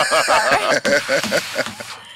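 People laughing and chattering over each other, the laughter in short repeated bursts that die away near the end.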